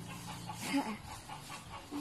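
A chicken clucking briefly and faintly, against soft rustling of a cloth being handled and a low steady hum that fades in the first half second.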